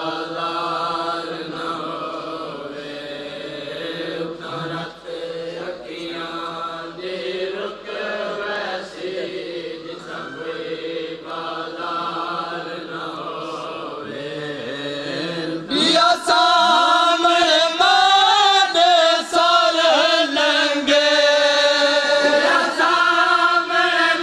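Men chanting a Punjabi/Saraiki noha (Shia lament) without instruments, in long drawn-out sung lines. About two-thirds of the way through, a louder, higher voice takes up the next line.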